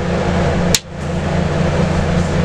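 Steady low drone of a vehicle's interior while driving, heard inside the cabin. A sharp click and a momentary dip in level come about three-quarters of a second in.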